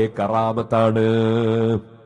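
A man's voice chanting in a melodic, intoned style: a short phrase, then one long held note that stops shortly before the end, leaving a brief echo.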